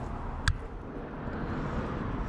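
Steady low outdoor background noise with a single sharp click about half a second in.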